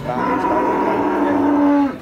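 Cattle mooing: one long, loud call of nearly two seconds at a steady pitch, stopping abruptly.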